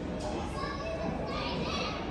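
Children's high-pitched voices calling out over a steady background din of a crowd.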